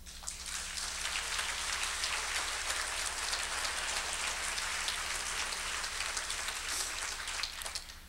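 Audience applauding: a dense patter of many hands clapping that rises just after the start and dies away near the end.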